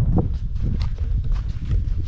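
A hiker's footsteps on a dry, sandy dirt trail, about two steps a second, over a low wind rumble on the microphone.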